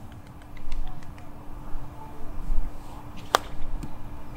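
A single sharp click of a golf club striking the ball on a short chip shot, about three seconds in, over a low rumble and a faint steady hum.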